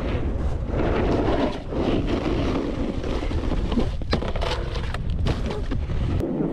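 Snowboard riding down a groomed slope: the board's edge scraping and hissing over the snow under a heavy rumble of wind buffeting the action-camera microphone, with a brief run of sharp clatters about four seconds in.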